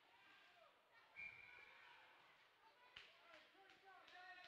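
Near silence: faint rink sounds, with a brief high steady tone about a second in, a sharp click about three seconds in, and faint distant voices near the end.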